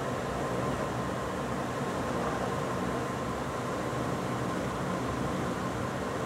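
Steady background hiss with a low hum, like a running fan or air conditioner, at an even level with no distinct events.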